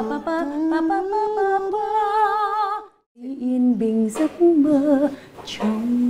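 A woman singing a melodic phrase unaccompanied, wavering with vibrato on the longer notes. The voice breaks off sharply about halfway through, starts again, and ends on a long held note.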